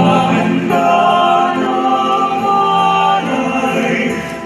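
Small mixed church choir of male and female voices singing a hymn in harmony, holding long notes.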